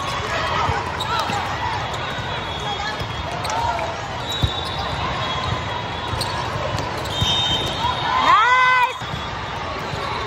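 A volleyball rally in a big echoing hall: the ball is struck sharply a few times, sneakers squeak on the court, and the crowd murmurs throughout. A loud shout from a player or spectator comes near the end.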